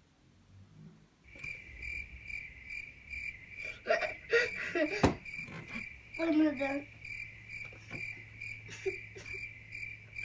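A steady high-pitched electronic tone pulsing about twice a second over a low hum, starting a second or so in and cutting off abruptly: an edited-in waiting or suspense sound effect. Brief child vocal sounds and a sharp click come over it midway.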